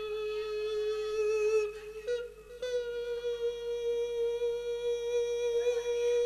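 A monk's sung Isan-style sermon (thet lae) through a microphone: one long, steady held note that steps slightly up in pitch about two and a half seconds in.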